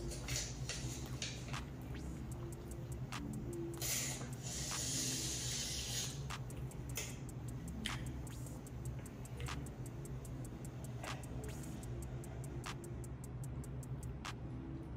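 Close-up chewing of sushi: scattered wet mouth clicks and smacks, with a hissing breath or rustle about four seconds in that lasts about two seconds. Quiet music plays steadily underneath.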